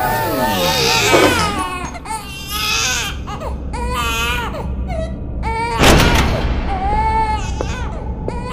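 An infant crying in repeated wavering wails, one about every second, with a sudden thump about six seconds in.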